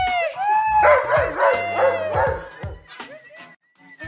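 A husky howling in a run of short rising-and-falling woos, fading out about three and a half seconds in, with music underneath.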